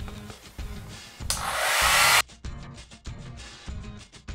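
Hair dryer blowing for just under a second, starting about a second in, rising in level and then cutting off abruptly. Background music with a steady beat runs underneath.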